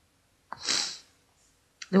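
A short, sharp breathy noise from a person, about half a second long, beginning with a click about half a second in.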